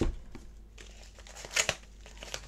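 Parcel packaging being torn open and crinkled by hand: a loud rip right at the start, another about a second and a half in, with light crackling between.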